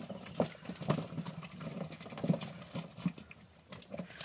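Irregular wet squelches and slaps of bare feet and hands working in soft mud, a handful of short sounds at uneven intervals, with a quieter stretch near the end.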